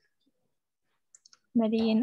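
Near silence, then three quick, faint clicks about a second in, followed by a woman's voice near the end.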